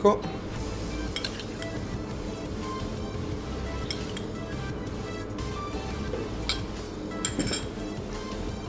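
Light clinks of a metal spoon against a small metal cup and a porcelain plate as basil caviar is spooned out, over soft background music. A few sharper clinks near the end as the spoon and cup are set down.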